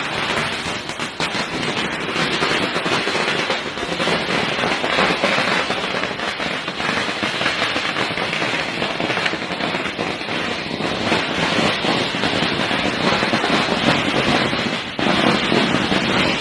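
A long string of small firecrackers (a ladi) going off as one unbroken, rapid crackle of tiny bangs, dipping briefly near the end.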